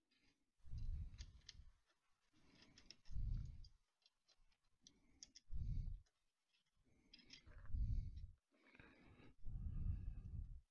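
Small scattered clicks and taps of a screwdriver and bracket hardware on aluminium rails during hand assembly. A muffled low rumble comes back about every two seconds.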